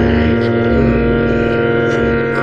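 Background music: a loud sustained drone of many held tones, with low bass notes shifting a few times underneath.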